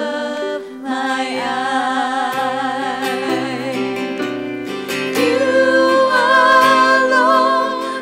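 Three women singing a worship song together into microphones, accompanied by piano and acoustic guitar. The voices hold long notes with vibrato and swell louder about five seconds in.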